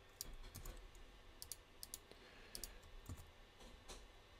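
Faint, irregular clicking of computer keyboard keys being typed, about a dozen sharp clicks spread unevenly.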